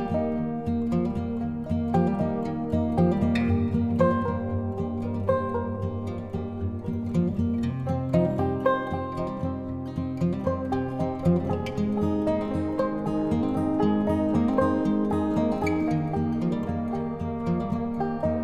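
Instrumental background music with plucked-string notes.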